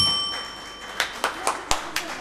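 A sharp metallic ding rings out and fades within about a second, followed by scattered hand clapping from a small audience, about two or three claps a second.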